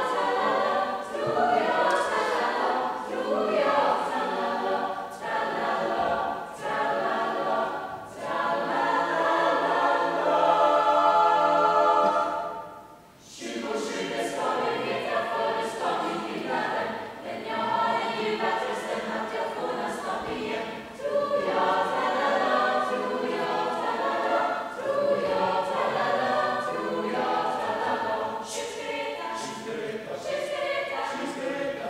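Mixed choir of men and women singing a cappella under a conductor. A chord held from about ten seconds in breaks off in a short pause at about thirteen seconds, then the singing goes on.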